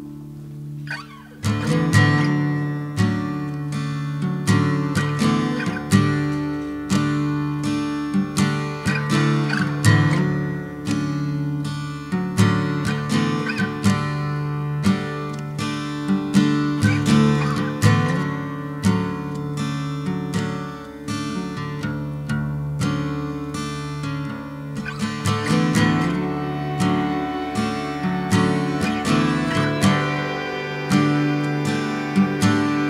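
Acoustic guitar playing a wordless instrumental passage of a folk-rock song, with picked and strummed chords on a steady beat; it comes in fully about a second and a half in.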